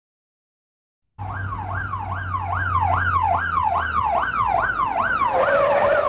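Police car siren sweeping rapidly up and down in pitch, about two and a half sweeps a second, starting after about a second of silence. A steady held tone comes in under it near the end.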